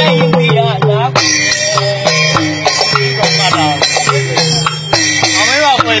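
Six clay-pot drums played by hand as a Burmese six-drum set: a quick, steady run of strikes, many of them sliding in pitch as they ring. A steady low tone that changes pitch every second or so runs underneath, with a jingling shimmer above.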